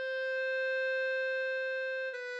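B-flat clarinet holding one long note of the melody, swelling slightly in the middle.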